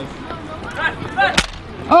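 A Nerf foam-dart blaster firing once: a single sharp pop about a second and a half in.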